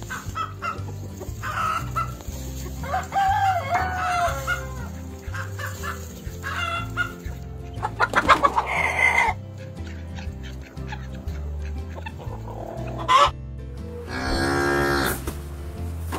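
Domestic hens clucking with short calls throughout, and a rooster crowing, over background music with a steady low beat.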